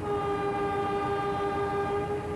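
Locomotive horn sounding one long steady blast that starts abruptly, several notes at once.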